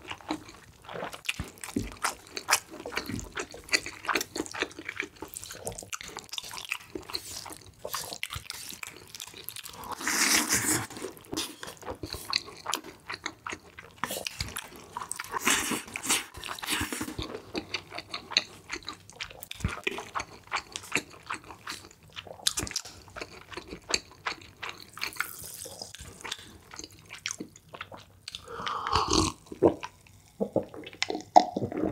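Close-miked mouth sounds of eating spicy cream-sauce fried noodles: steady wet chewing and smacking, with long loud slurps of noodles about ten seconds in and again around fifteen to seventeen seconds. Near the end he drinks from a glass of water.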